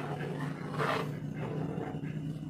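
Metal spoon stirring thick, setting maja blanca pudding in a metal pan, with two swishing scrapes about a second apart over a steady low hum.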